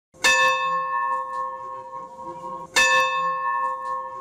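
A church bell struck twice, about two and a half seconds apart, each stroke ringing on with a long, slowly fading tone.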